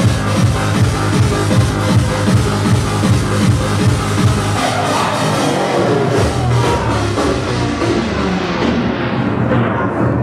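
Hard dance music played loud by a DJ over a club sound system, driven by a steady kick drum. About halfway the kick thins out, and over the last few seconds the high end is swept steadily away, as in a build into a breakdown.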